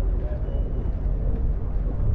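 Outdoor ambience of a busy waterfront walkway: a steady low rumble with faint voices of passers-by in the background.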